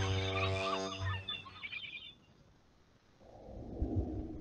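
A short musical logo sting: a held chord with chirping, bird-like sounds over it, fading out about two seconds in. A softer sound swells in near the end.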